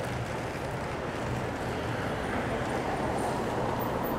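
Steady city street traffic noise, an even low rumble of passing cars.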